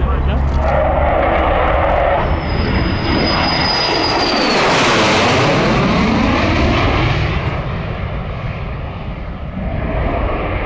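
A Greek F-4E Phantom II's twin J79 turbojets roar as the fighter makes a low pass. A high engine whine drops slightly in pitch just before the loudest point, about halfway through. The jet noise swooshes and sweeps in pitch as it goes by, then fades as the aircraft pulls away.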